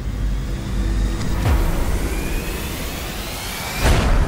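Cinematic logo-reveal sound effect: a deep rumble with a rising whoosh that builds over about three seconds, then a sudden heavy hit near the end as the logo lands.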